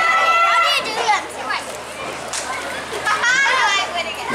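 Young girls' voices shouting and calling out across a sports field, with a held high call early on and a loud, wavering shout about three and a half seconds in.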